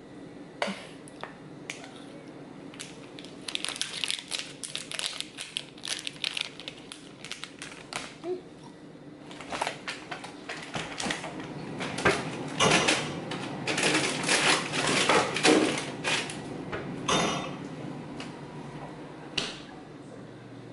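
Handling and eating a soft, melted honeydew Melona ice-cream bar: scattered small clicks and crinkles in the first half, then a run of louder wet mouth and handling noises in the second half as it is bitten and eaten.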